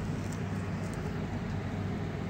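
Steady low background hum with a faint even hiss, and no distinct events.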